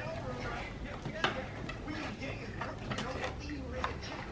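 Cardboard doll box and its packaging fastenings being handled as a doll is freed from the box, with a few sharp clicks and snaps: one about a second in, a couple around three seconds, and one near the end. Faint murmured voices underneath.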